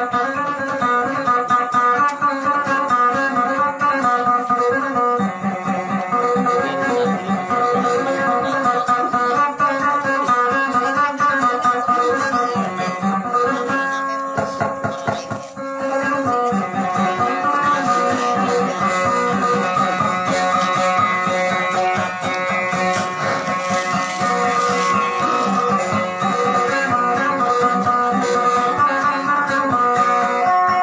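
Guitar plucked in a continuous melodic line, the accompaniment of a dayunday song; the playing thins out briefly about halfway through, then carries on.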